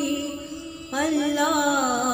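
A woman's solo voice chanting an Urdu noha, a mourning lament. A held note fades, then a new melodic phrase with sliding pitch begins about a second in.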